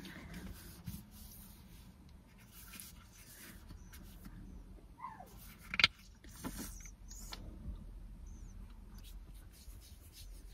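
Quiet handling sounds of sunscreen being put on inside a parked car: scattered soft clicks and rubbing over a low steady hum, with a short falling squeak about five seconds in and a sharper click just before six seconds.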